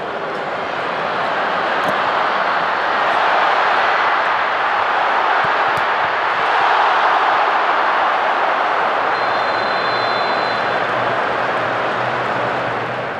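Large football stadium crowd, its cheering noise swelling about three seconds in and again around seven seconds as an attack nears goal.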